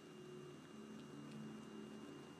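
Very quiet room tone with a faint, steady low hum.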